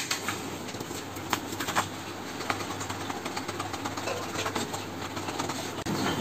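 Paper being cut out and handled with scissors: a few faint, scattered snips and paper rustles over a steady low background hum.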